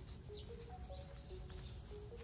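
Background music: a simple melody of clear, held notes stepping up and down. Short high bird chirps come through several times over a low rumble.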